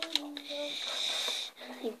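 A girl humming a low note softly, then a breathy hiss with a whistling edge lasting about a second.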